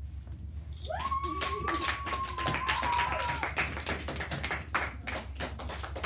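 A small group of people clapping, with uneven claps starting about a second in, and a long high held note over the first half, rising at its start. A low steady hum runs underneath.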